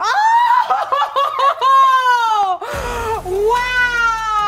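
A rooster held in someone's arms squawking: two long, loud calls that fall in pitch at the end, the first one broken up by quick choppy sounds.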